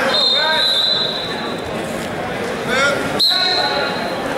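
Referee's whistle blown twice to restart a wrestling bout: a steady shrill blast lasting about a second, then a second blast starting sharply about three seconds in. Spectators shout over it and between the blasts.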